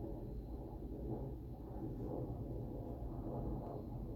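Steady low room noise, a dull hum and rumble with no distinct event standing out.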